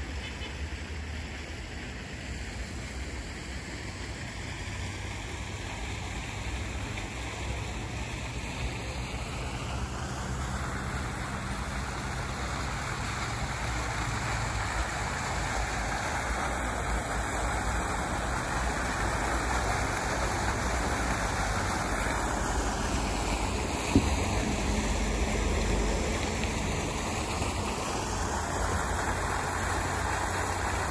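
Single-jet fountain splashing into its basin: a steady rush of falling water that grows louder from about ten seconds in, over a low hum of road traffic. One brief sharp knock sounds near the end.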